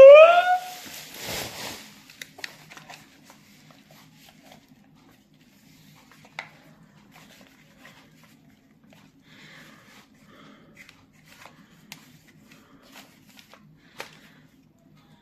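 A short rising exclamation, then bubble-wrap packaging crinkling for about two seconds as headphones are pulled out of it, followed by faint scattered clicks and crinkles of the headphones and wrap being handled over a low steady hum.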